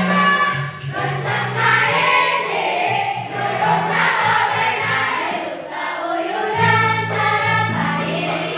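A class of young teenage students singing a song together as a choir, with sustained held notes underneath the melody.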